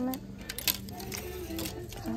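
Plastic clothes hangers clicking and scraping along a metal clothing rail as they are pushed aside, with a sharp click about two-thirds of a second in.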